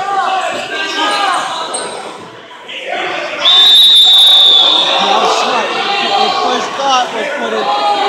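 Spectators' voices and shouting in a gym. About three and a half seconds in, a loud, high, steady signal tone sounds for just over a second while the bout is stopped.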